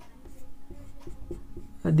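Whiteboard marker writing on a whiteboard: a series of short, light strokes as a formula is written out.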